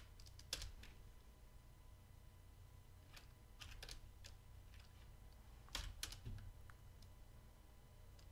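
Faint computer keyboard keystrokes: a few scattered single key presses as answers are typed at terminal prompts, with a louder pair of presses about six seconds in.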